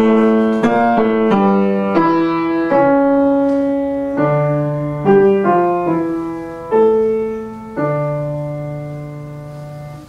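Grand piano playing a solo interlude in a classical song accompaniment: a slow succession of struck notes and chords, each fading after it is struck. The last chord is held and dies away toward the end.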